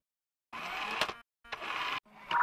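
Cartoon robot servo sound effect: two short mechanical whirs, the first with a click in it, as the toy robot shakes its head in refusal.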